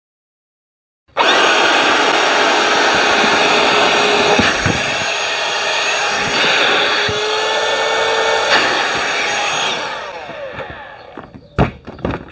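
Parkside PALP 20 A1 cordless 20 V air pump running, blowing air through its nozzle into the valve of an inflatable rubber boat's chamber. It starts suddenly about a second in, runs steadily with a slight rise in its hum partway through, then winds down near ten seconds, followed by a couple of sharp clicks.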